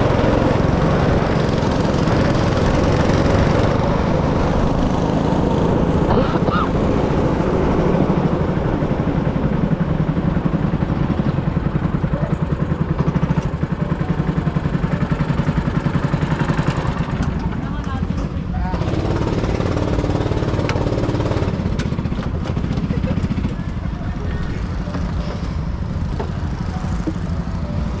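Go-kart engine running hard under throttle, heard from the driver's seat with the note pulsing fast and even. About two-thirds of the way through it eases off to a lower, steadier running note as the kart slows into the pit lane and comes to a stop.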